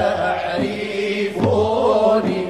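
Sufi madih and samaa devotional chanting: voices singing a melodic line, with a low beat recurring about every second and a half.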